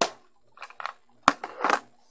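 Small hand-held plastic items being handled and put down: a handful of sharp clicks and knocks, the sharpest about a second and a quarter in, followed by a brief scrape.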